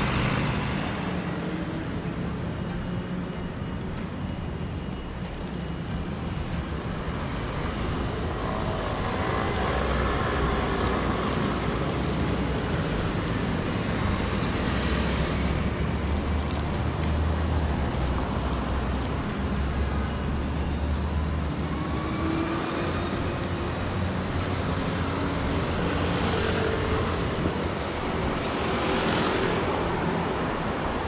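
City road traffic: a steady rumble of cars driving past on a multi-lane street, with several vehicles swelling up as they pass close and fading away again.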